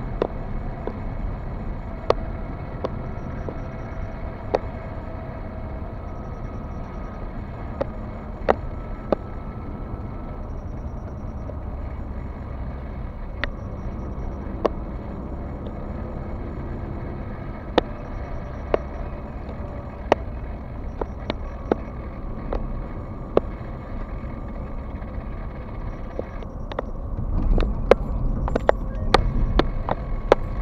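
Road and engine noise inside a moving car's cabin: a steady low rumble, with irregular sharp clicks or knocks every second or two that grow louder and more frequent near the end.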